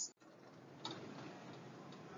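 Faint background hiss with a faint click about a second in and a weaker one near the end.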